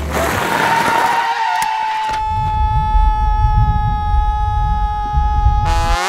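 Soundtrack sound effect: a whoosh with a slightly falling tone, then from about two seconds in a long, steady held tone over a low pulsing beat, cut off by a short burst near the end.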